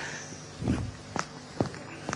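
A few footsteps of shoes on a stage floor, a performer walking across the stage: three short, separate knocks about half a second apart.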